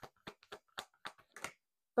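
A deck of tarot cards being shuffled by hand: a quick run of light card clicks and slaps, about five or six a second.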